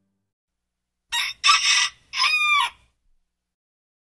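A rooster crowing once, a cock-a-doodle-doo about two seconds long starting about a second in: two short notes and then a longer, wavering final note.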